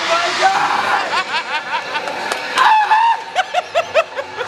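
Several people giggling and laughing in short, repeated bursts, mixed with indistinct voices.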